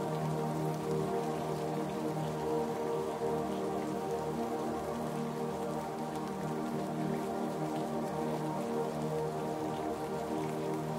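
Slow ambient relaxation music of long held chords laid over a steady recording of falling rain.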